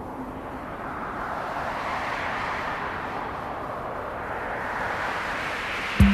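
Synthesized wind-like rushing noise, its pitch sweeping slowly up and then down, with no melody or beat.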